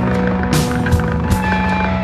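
Rock band playing live in a passage without vocals: a steady bass line and guitars under drum and cymbal strikes.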